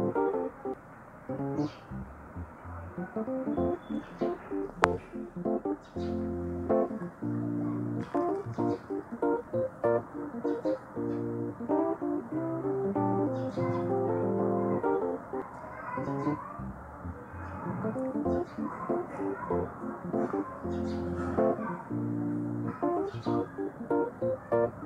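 Instrumental background music with a guitar-like plucked melody. A single sharp click about five seconds in.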